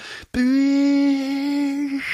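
A man's voice imitating an electric hand dryer: one steady, held hum on a single pitch, starting about a third of a second in.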